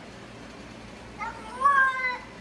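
Wet cat yowling a drawn-out, voice-like meow that sounds like "no more", starting about a second in: a cat protesting being bathed.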